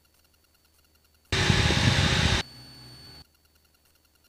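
A sudden burst of loud static hiss over the cockpit headset audio, lasting about a second. It falls to a quieter hiss with a faint high whine for under a second, then cuts off abruptly.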